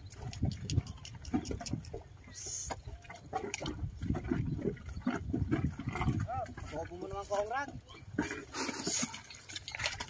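A carabao's hooves and a heavily loaded wooden sled sloshing and sucking through deep, wet rice-field mud, with repeated squelches and splashes. Indistinct voices are heard around it.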